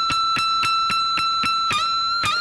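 Electric guitar playing a high note bent up at the 22nd fret and held at pitch, repicked about four to five times a second. Near the end the bend eases slightly and is pushed back up.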